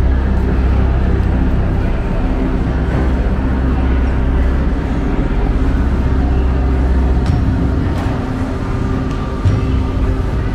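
Lion dance percussion band (big drum, cymbals and gong) playing continuously, dense and steady, with a few sharper strikes near the end.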